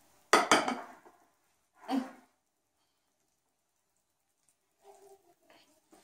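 Wire whisk clinking against a glass mixing bowl of thick cake batter: a sharp clatter just after the start and a shorter one about two seconds in, then little sound.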